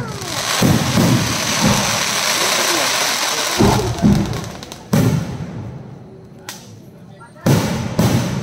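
Aerial fireworks. A shell bursts at the start and opens into dense crackling that lasts about four seconds. Four sharp bangs follow from about three and a half seconds in, the last shortly before the end.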